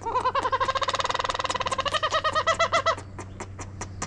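An aracari calling: a fast run of repeated pitched notes for about three seconds, slowing near the end into separate arched notes.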